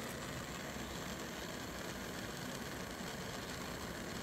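Steady, even background noise with a low hum, unchanging and with no distinct strokes or knocks.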